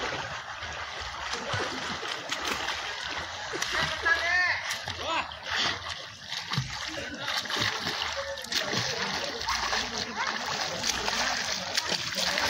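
Children swimming in a pool, their arm strokes and kicks splashing the water steadily, with children's voices calling out around the pool, one shout about four seconds in.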